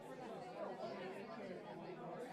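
Faint chatter of many voices talking at once, a crowd murmur with no single voice standing out.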